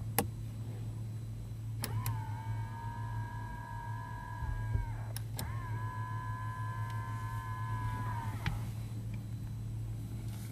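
Nissan X-Trail driver's-door power window motor whining as the glass travels, two runs of about three seconds each with a short break between them. A switch click marks each start and stop.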